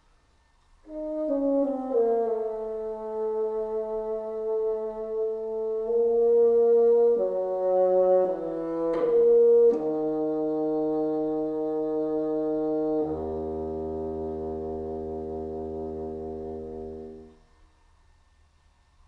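Solo bassoon playing a slurred, descending closing line that ends in an octave slur from E flat 3, fingered as a harmonic, down to a low E flat 2 held for about four seconds before it stops. The player hears that last low E flat as a little sharp.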